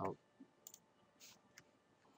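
Faint computer mouse clicks, a few scattered single clicks.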